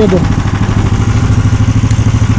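Koira motorized towing unit (motor dog) with its small engine idling steadily with an even, rapid pulse.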